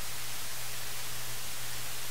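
Steady hiss, like static, with a low hum beneath it: the noise floor of an open microphone or audio feed with nothing else sounding.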